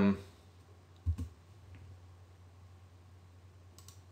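Computer mouse clicks at a desk: a dull thump about a second in and a faint, sharp click near the end, over a low steady hum.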